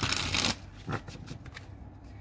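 A deck of tarot cards shuffled by hand: a loud rush of shuffling cards for about the first half second, then a few softer card flicks and taps.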